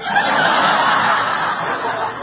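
Studio audience laughing, loud at first and dying down toward the end.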